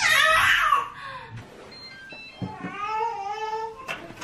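Infant vocalizing: a loud, high-pitched squeal during the first second, then a longer, lower, steadier whine from about two and a half seconds in.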